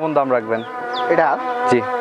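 A flying insect buzzing close to the microphone, a steady droning hum.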